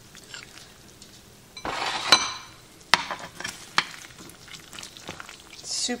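Metal serving spatula scooping baked macaroni and cheese from a glass baking dish onto a ceramic plate: a scrape about two seconds in, then a few clinks of metal against the dish.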